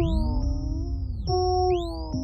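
Synthesizer beat intro: swooping tones that arc up and fall back down, repeating a little over once a second, over held notes and a low bass.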